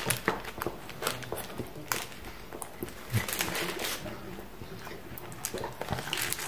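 A person chewing a bite of kebab close to the microphone: irregular soft clicks and wet smacks of the mouth, with no words.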